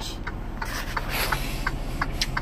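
Handling noise from a phone being moved around a truck cab: rubbing and a few light clicks, over the steady low hum of the 2018 Freightliner Cascadia's engine idling.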